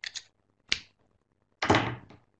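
A few sharp clicks close to the microphone: a quick double click at the start, a single click a little later, then a louder, heavier knock near the end.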